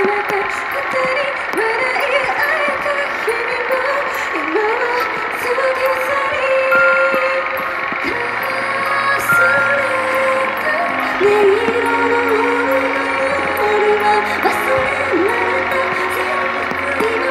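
Live J-pop idol song played over a PA system: a backing track with a lead vocalist singing into a handheld microphone. Steady low bass notes come in about halfway through.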